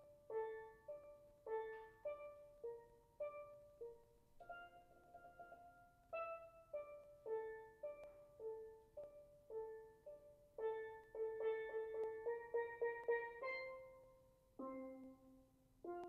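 Solo steel pan struck with sticks, playing a melody of ringing notes at a steady pace. About four seconds in, held notes are rolled with fast repeated strikes; past the middle comes a quicker run of notes, ending on a lower note near the end.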